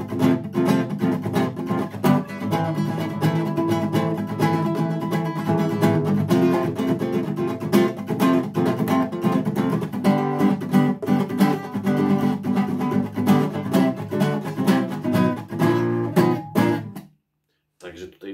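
Classical nylon-string guitar strummed with quick, even strokes through a run of chords, the loudness swelling and dropping as the playing is made louder and softer. The strumming stops about a second before the end.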